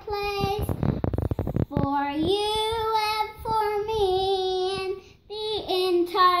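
A young girl singing alone, holding long notes in a child's voice. A brief patch of rustling, thudding noise comes about a second in.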